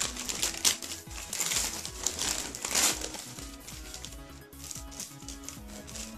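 Gift-wrap paper crinkling and rustling in several loud bursts during the first half, over background music with a steady beat.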